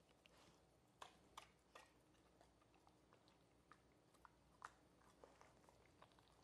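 Faint, irregular wet clicks of a dog chewing a piece of soft black licorice, over near silence. The clearest clicks come about one to two seconds in and again a bit past halfway.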